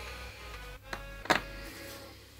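Soft background music with one sharp tap a little over a second in, from a carbon-coated graphite electrode plate knocking against the workbench as it is handled.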